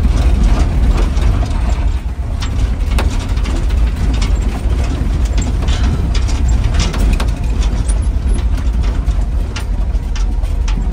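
Inside the cab of a vintage International Scout jolting along a rough dirt trail: a low engine and drivetrain rumble under constant, irregular rattling and clanking of the body and loose gear.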